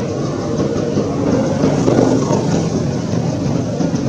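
Steady, loud low rumble of background noise, swelling slightly about halfway through.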